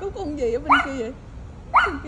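Small fluffy white dog 'talking': two sharp yips about a second apart, each running into a wavering, warbling whine, as it vocalizes toward another dog it seems to sense.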